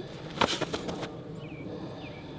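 A few sharp slaps and knocks about half a second in as two linemen make contact in a one-on-one blocking rep: hands striking the opponent's chest and bodies colliding. A few lighter scuffs follow, then faint bird chirps over quiet outdoor background.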